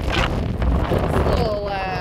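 Wind buffeting the phone's microphone, a heavy uneven rumble, with a voice starting up near the end.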